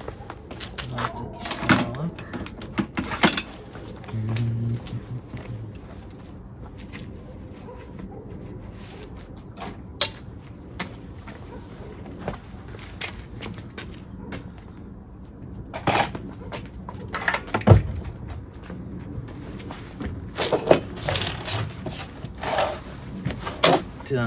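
Scattered knocks, clicks and clatter of tools and metal pieces being handled, loudest about two-thirds of the way through.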